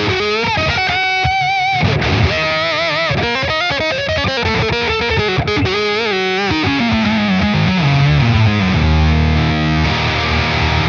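Electric guitar, a 1961 Fender Stratocaster on its bridge pickup, played through a Redbeard Effects Honey Badger octave fuzz on its minus-two octave setting with the blend boosted. Fuzzy lead lines with wide vibrato and bends, then a falling run into a low held note near the end, the added octave dropping in and out as the pedal's tracking wavers.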